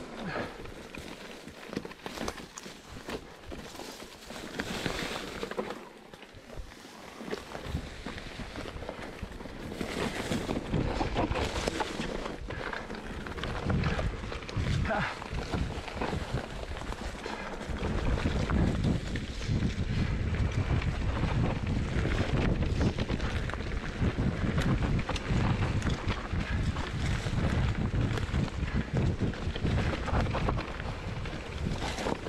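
Mountain bike riding fast down a leaf-covered forest dirt trail: tyres rolling over dirt and leaves, with short knocks and rattles from the bike over bumps. Wind buffets the microphone, light at first and becoming a heavy, louder rumble in the second half as speed builds.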